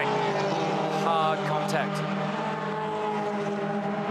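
Toyota 86 race cars' flat-four engines running at a steady, held pitch.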